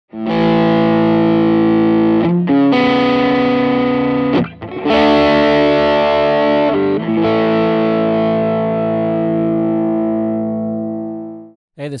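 Electric guitar played through a Xotic BB Preamp overdrive pedal: a few held, overdriven chords, changing every couple of seconds, the last one left to ring out and fade away near the end.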